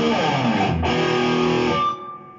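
Gretsch hollowbody electric guitar played through a Blackstar HT Stage 60 MKII valve combo on its overdrive channel. Loud chords are struck, a second one about a second in, and the sound is cut off sharply near the end.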